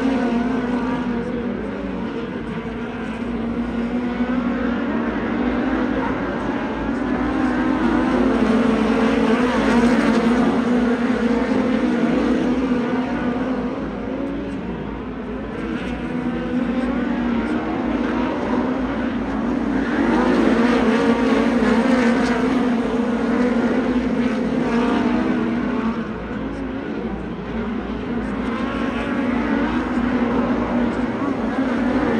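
Several USAC midget race cars lapping a dirt oval, their engines running together in a steady drone that swells and fades as the field passes, loudest about a third of the way in and again around two thirds.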